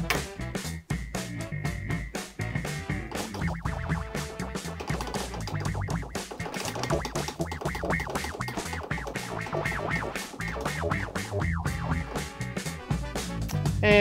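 A DJ track playing through a Rane Performer DJ controller with its ring modulator fader effect being worked in. A steady high tone sits over the music for the first few seconds.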